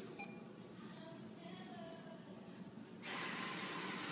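Quiet background room noise. About three seconds in, a steady hiss sets in abruptly.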